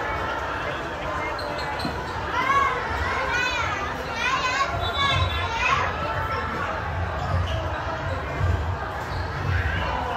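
Children's voices calling and chanting in a large sports hall, loudest in the middle, over repeated low thuds.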